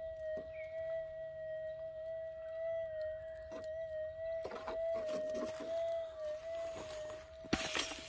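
Minelab GPZ 7000 gold detector's threshold tone, a steady hum that wavers slightly a few times as the coil is swept over the dug hole; the wobbles could be ground noise rather than a target. Faint scuffs of the coil on the dirt, with a louder scrape near the end.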